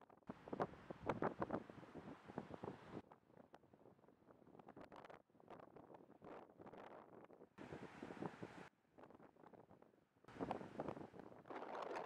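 Fairly quiet wind gusting against the microphone, over the wash of surf breaking on a sandy beach. The sound changes abruptly several times.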